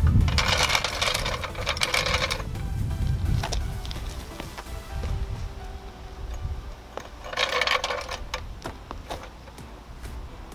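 Background music with wind rumbling on the microphone, and scattered clicks and rattles as a low-profile floor jack is slid under the car and its rubber pad lined up under the jacking point.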